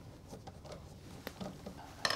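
Faint scraping and a few small ticks of a screwdriver turning out the screw of a plastic receptacle cover plate.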